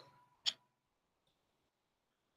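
A single brief click about half a second in, then near silence.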